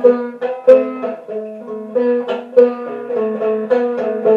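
A five-string banjo played solo, fingerpicked notes coming quickly in a steady rhythmic pattern with no singing.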